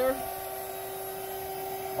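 Electric blower fan on a wood gasifier running steadily with a constant hum, sucking air through the reactor while it heats up.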